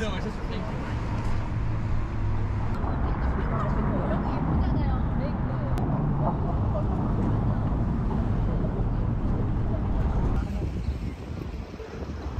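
City street ambience: a steady rumble of road traffic with people's voices over it, falling to quieter street noise about ten and a half seconds in.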